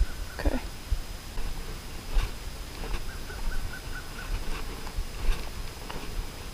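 Wind rumbling on the microphone and footsteps on a gravel track, with a short run of fast, even clicks about halfway through.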